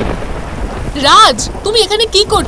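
Heavy rain with a low rumble of thunder. About a second in, a woman's high, raised voice cries out over it.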